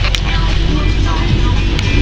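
Car cabin noise while driving: a steady low rumble of engine and road, with a couple of short clicks and faint voices and music underneath.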